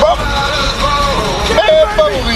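Unworded voice sounds over a steady low rumble inside a car's cabin.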